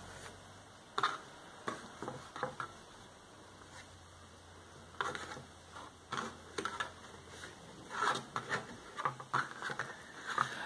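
Hands working embroidery thread around a flat cord on a hardboard clipboard: short, scattered rustles and scuffs as thread is passed and pulled tight into square knots.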